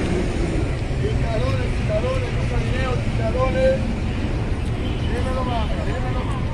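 City street noise: a steady low traffic rumble, with people talking in the background.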